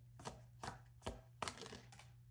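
Tarot cards being handled: a handful of faint, short taps and flicks as a deck is moved and cut.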